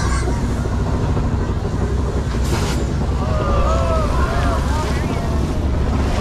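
Studio-tour tram sitting with a steady low rumble, a short rush of hissing noise about two and a half seconds in, and voices in the second half.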